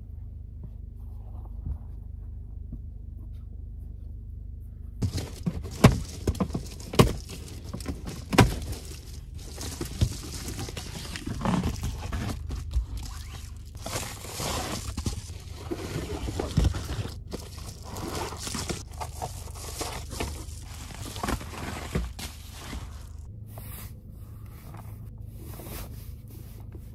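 Rustling and crinkling of blankets and reflective bubble-foil window shades being handled and pulled down inside a car, with frequent sharp clicks and knocks, starting about five seconds in.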